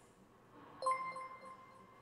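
Live-stream alert chime for a new subscriber: one bright ringing tone starts suddenly about a second in and fades away over about a second.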